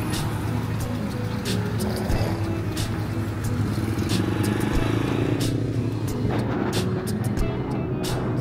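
Street traffic, with a motor scooter's engine running close by and steady background music over it.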